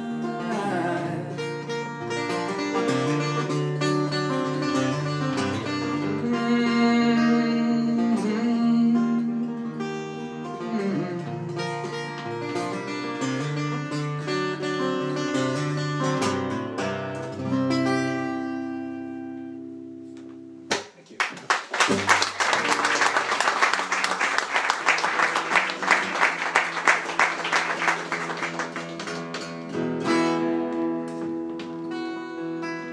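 Steel-string acoustic guitar playing the closing bars of a song, ending on a chord that rings and fades out about twenty seconds in. A small audience then applauds for the rest.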